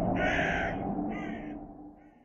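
Crow cawing twice, harsh calls over a low rumbling drone that fades away near the end.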